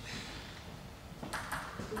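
Table tennis ball bouncing, two or three quick sharp clicks about a second and a half in, over low voices in the hall.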